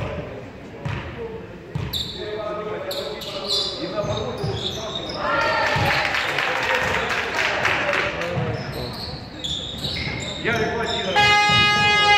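A basketball bouncing on a wooden gym court amid players' movement, with reverberation from a large hall. About a second before the end, a steady pitched buzzer comes on and holds.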